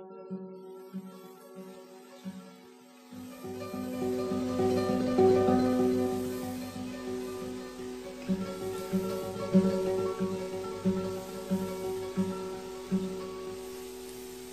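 Instrumental introduction to a song, led by plucked acoustic guitar. About three seconds in, a fuller and louder accompaniment with bass joins.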